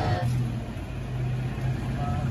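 Toyota Tacoma pickup truck's engine running with a steady low hum.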